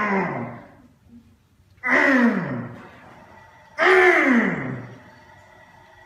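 A man's strained vocal exhalations with each rep of dumbbell hammer curls: three long groans about two seconds apart, each falling in pitch.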